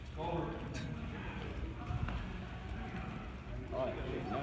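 Faint, indistinct voices in a gym, with a few soft knocks and footfalls on the wrestling mat.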